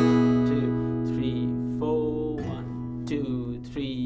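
Steel-string acoustic guitar with a capo, strummed with a pick through open chords: a full chord struck at the start, a chord change about two seconds in, then lighter strokes that thin out toward the end.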